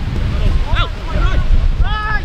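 Wind buffeting the microphone in a heavy low rumble, with footballers' distant shouts across the pitch: two short raised calls about a second apart.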